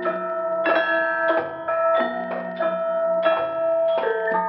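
Javanese gamelan ensemble playing: bronze kettle gongs and metallophones struck in a steady pulse of about one or two strokes a second, each note ringing on under the next.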